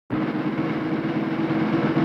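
A loud, steady rumbling rattle with a low hum underneath, starting suddenly just after the start out of silence.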